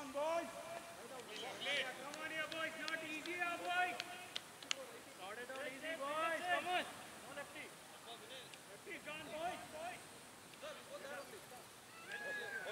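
Men's voices talking and calling out across an open cricket field, with one sharp click just under five seconds in.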